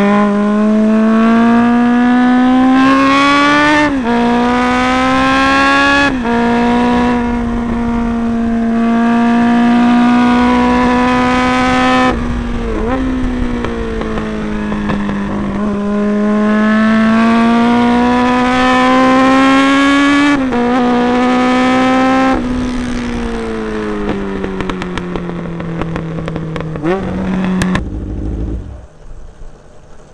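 Racing motorcycle engine heard from an onboard camera, revving up through the gears with a sudden drop in pitch at each upshift, then winding down as it slows for corners, in repeated laps of acceleration and braking. The engine sound cuts off abruptly near the end.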